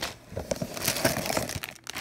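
Clear plastic bags of Lego pieces crinkling as they are handled, a light crackle of many small ticks.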